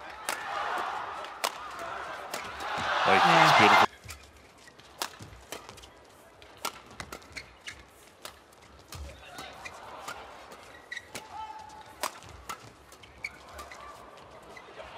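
Arena crowd noise swelling loudly, then cut off abruptly about four seconds in. After that comes a badminton doubles rally: sharp racket strikes on the shuttlecock, roughly one a second at uneven spacing, with a few short squeaks.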